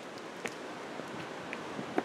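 Steady outdoor background hiss, like light wind on the microphone, with a few soft clicks and a sharper tick near the end.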